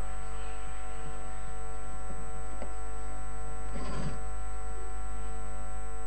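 Steady electrical mains hum with many evenly spaced overtones, carried through the concert sound system.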